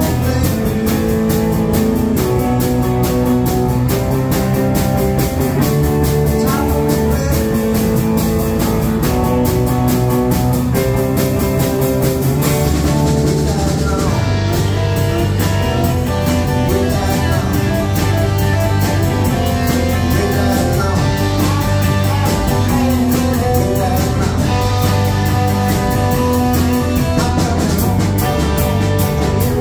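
Live rock band playing an instrumental passage on electric guitars, bass guitar and drum kit, with a steady beat and no singing. The cymbals thin out briefly about halfway through.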